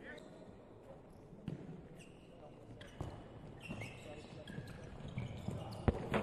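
A handball bouncing on the indoor court floor several times, with short high shoe squeaks and players' calls echoing in an empty hall. A louder thud comes near the end.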